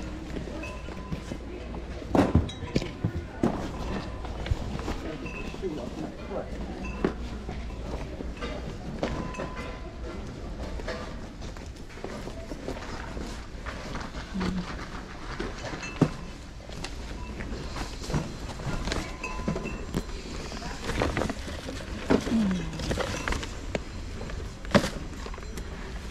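Indistinct background chatter of other people in a large room, with scattered short knocks and handling noises.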